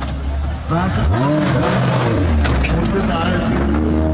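Maruti Gypsy's engine revving hard as it climbs out of a dirt trench. The revs rise sharply about a second in, then fall away, and climb again near the end.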